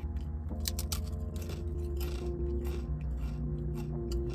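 A person chewing crisp ramen chips, with a run of irregular crunches.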